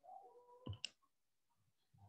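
Near silence with faint tones in the first half second, then two sharp clicks close together a little under a second in, typical of keystrokes on a computer keyboard.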